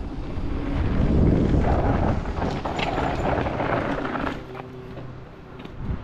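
Mountain bike descending a dirt trail: tyre noise on dirt with the bike rattling over bumps, loud for the first four seconds, then easing off.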